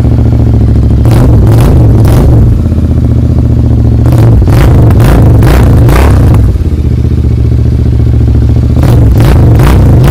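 A 2019 Royal Enfield Continental GT 650's parallel-twin engine running loud through aftermarket exhaust mufflers. It is revved in three bursts of quick throttle blips, about a second in, at the middle and near the end, and drops back to idle between them.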